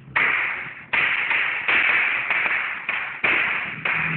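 Chalk writing on a blackboard: a run of short, scratchy strokes, each starting sharply and fading, about two a second.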